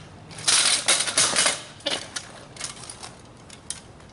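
Kick scooter rolling over concrete, its wheels and frame clattering loudly for about a second, then lighter scattered clicks and rattles.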